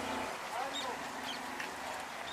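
Birds calling: a few short, curved calls and small high chirps over a steady low hum.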